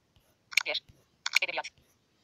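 Android TalkBack screen reader stepping through a list: twice, a short focus click followed by a fast synthetic voice reading out the next item's name.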